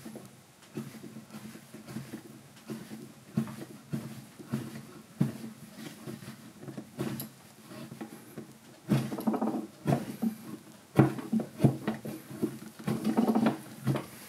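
Curved carving gouge paring shavings from the inside of a wooden spoon's bowl: a run of short scraping cuts, with louder, longer strokes in the second half.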